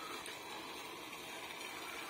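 Faint, steady background hiss of outdoor ambience with no distinct sound event.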